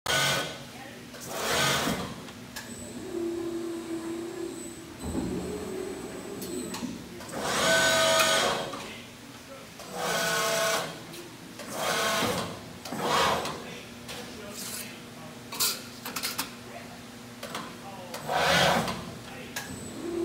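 RAS Turbo Bend Plus sheet-metal folding machine being cycled from its foot pedal: its drives whine in short runs of about a second as the beams move, several times over, over a steady machine hum.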